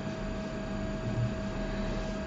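Steady background hiss with a low mains hum and a faint steady tone running through it: the recording's room tone.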